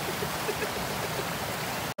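Small rocky mountain stream rushing steadily, with a brief dropout in the sound just before the end.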